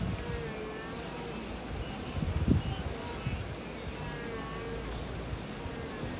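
Wind buffeting the microphone in low gusts, the strongest about two and a half seconds in, over a steady noisy haze with faint, drawn-out calls in the background.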